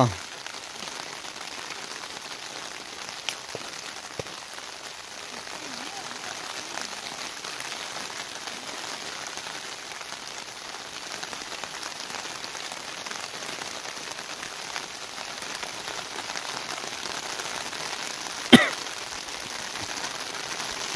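Steady rain falling on water and leaves, an even hiss, with one sharp knock near the end.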